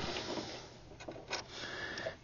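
Faint, quiet handling: a couple of soft small clicks as a small screw is set by hand into a sewing machine's metal needle plate.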